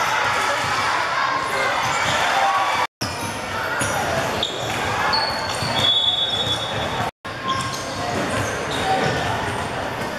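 Basketball bouncing on a wooden sports-hall floor amid spectators' chatter and calls, echoing in the large hall. The sound drops out abruptly twice, about three and seven seconds in.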